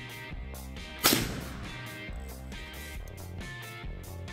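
A single shot from a .357 Magnum carbine firing a 180-grain Hornady XTP handload, about a second in, with a short tail fading after the crack. Guitar background music plays throughout.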